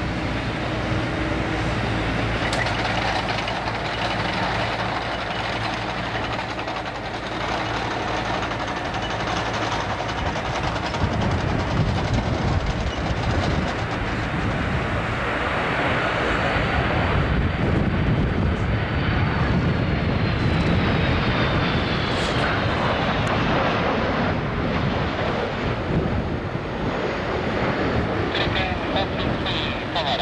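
Airbus A330 jet engines on final approach: a steady, loud rumble that builds as the airliner closes in. A thin high whine falls in pitch from about halfway to three quarters through.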